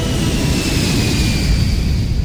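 A loud rumble and hiss with a high whine that falls slowly in pitch, like a jet flying past; a jet-flyby-style sound effect in a radio show intro.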